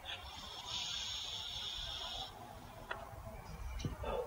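A steady high hiss lasting about two seconds, then a single small click, over a faint low rumble of distant traffic.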